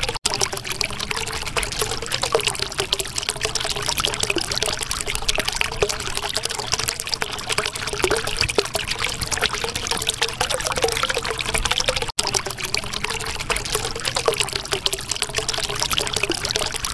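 Flowing water trickling steadily with a continuous bubbling gurgle. It cuts out for an instant twice, just after the start and about twelve seconds in.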